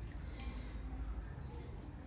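A fork clinks once, briefly, against a bowl as spicy ramen noodles are twirled and lifted, over a steady low hum.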